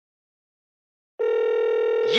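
Dead silence for just over a second, then a telephone dial tone starts: one steady, unbroken buzzy tone.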